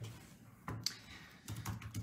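A few scattered clicks of typing on a keyboard, in short irregular bursts.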